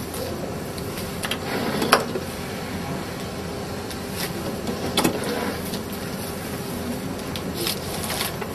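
Suzumo SVR-NNY maki sushi robot running a cycle after being started, its mechanism whirring steadily as it forms and delivers a sheet of rice. A sharp clack comes about two seconds in and another about five seconds in.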